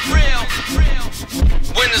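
Hip-hop music: a rapped vocal over a beat with a steady kick drum, about three kicks in two seconds. The voice drops out briefly past the middle, then comes back in.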